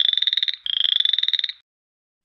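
Frog call sound effect: two fast-pulsing trilled croaks. The first ends about half a second in, the second a little over a second long, stopping about a second and a half in.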